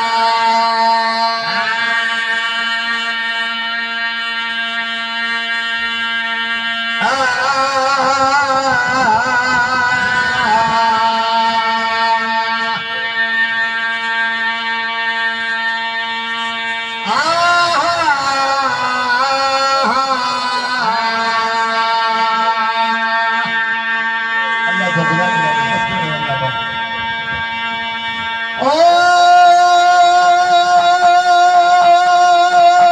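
A zakir's amplified male voice chanting a recitation into a microphone in long held notes, with a steady drone note sustained beneath. Louder, ornamented phrases swell up about 7, 17 and 29 seconds in.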